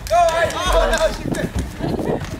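A few people shouting and cheering excitedly, with voices rising and falling in pitch, over scattered knocks and a low rumble.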